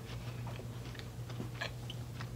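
Thin caramel-coated pretzel sticks being bitten and chewed: faint, irregular little crunches. A low steady hum runs underneath.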